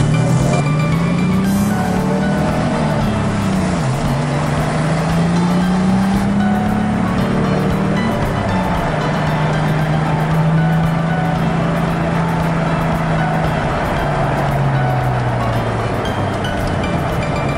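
Car engine accelerating on a race track, heard from inside the cabin: its pitch climbs and drops sharply about four and eight seconds in as it shifts up, holds steady, then falls away near the end as it slows. Background music plays along with it.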